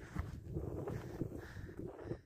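Wind buffeting the microphone on an exposed summit: an uneven low rumble broken by small rustles and knocks.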